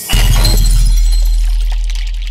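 Logo-intro sound effect: a sudden hit with a deep bass boom and a glassy, shattering sparkle on top, both fading slowly.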